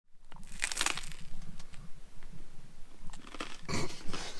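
Close-up eating sounds: chewing and wet mouth sounds from someone eating a peanut butter roll and licking her fingers, with irregular crackles and clicks, over a low steady hum.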